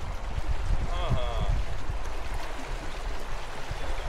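Shallow stream flowing, with a low gusty rumble of wind on the microphone. A short voice sound comes about a second in.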